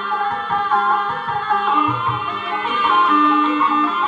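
Live Javanese gamelan music for a kuda kepang (ebeg) hobby-horse dance: held metallic tones under a high, wavering melody, with a few drum strokes near the middle.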